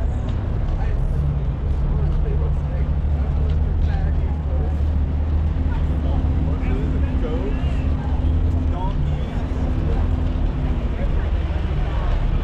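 A steady low engine hum, like an engine idling close by, with a second steady tone joining in for most of the middle, under the scattered talk of people around.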